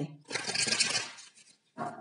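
A deck of tarot cards shuffled by hand: a fast, papery flutter of card edges beginning about a third of a second in and lasting under a second, followed by a shorter, softer shuffle near the end.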